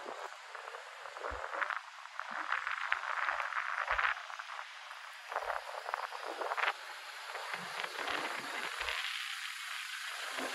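Quiet city street ambience: a steady hiss of distant traffic with many irregular light clicks and taps, thickest in the first half.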